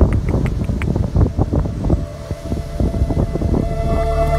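Gusty wind buffeting the microphone, a loud uneven rumble with many short blasts that ease off a little about halfway through.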